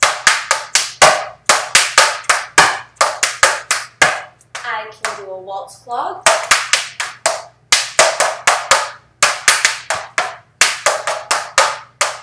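Metal taps on tap shoes striking the floor in fast runs of sharp clicks, about five a second, as a tap dancer repeats Maxie Ford steps. The clicks break off for about two seconds a little after four seconds in, then resume.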